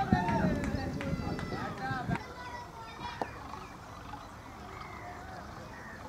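Cricket players' voices calling and shouting across the field, busiest in the first half and fainter after, with a few sharp knocks.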